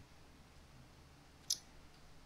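A near-silent pause of room tone with a single short, sharp click about one and a half seconds in.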